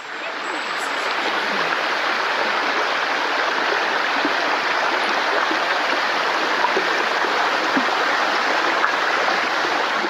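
Shallow creek running fast over a rocky bed: a steady rush of water that swells in over the first second or two and then holds even.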